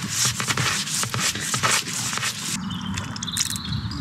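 A black drain rod dragged up out of a plastic inspection chamber, rubbing and scraping in quick strokes against the chamber rim for about two and a half seconds, then quieter.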